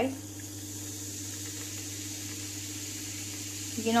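Sprite poured into a tall glass over ice and chopped fruit, fizzing with a steady hiss as it foams up.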